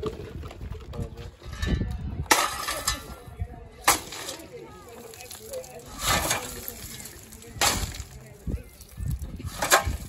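Long-handled shovel scraping into a heap of loose coal and throwing it into a metal tub: a run of sharp scrapes and clattering coal, about five strokes a couple of seconds apart.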